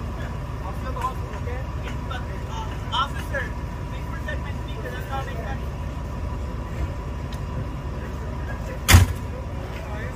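LAFD rescue ambulance idling with a low steady rumble, a faint steady high tone over it and scattered faint voices; about nine seconds in, one loud slam as a rear door of the ambulance is shut.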